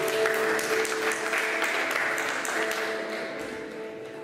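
Congregation applauding, the clapping at its fullest early on and thinning out towards the end, over soft held instrumental chords.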